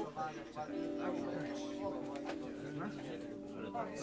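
A steady, sustained musical tone or chord held for about three seconds, starting a little under a second in, with people talking over it.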